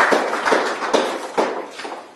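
A small group of people clapping, thinning out and fading near the end.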